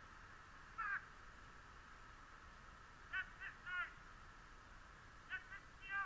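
A bird giving short, harsh caws: one call about a second in, three in quick succession around the middle, and another quick run near the end.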